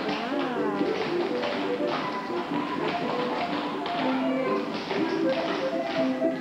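Many children's tap shoes tapping unevenly on a wooden floor during a group dance, over recorded music.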